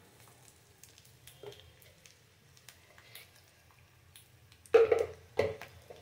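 Faint ticking crackle of a small steel tempering pan of peanuts, chillies and curry leaves frying in oil on a gas burner, just after powdered spice is spooned in. About five seconds in, two loud short knocks stand out.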